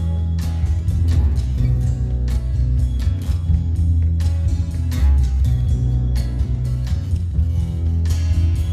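Acoustic guitar strummed in a slow, unhurried rhythm, playing the chords of a ballad.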